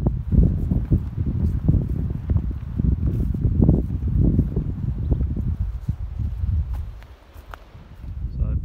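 Wind buffeting a phone microphone in uneven low gusts, with footsteps along a dirt path.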